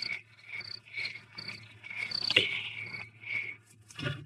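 Crickets chirping, short high chirps repeating about twice a second, over a steady low hum. A single sharp knock about two and a half seconds in.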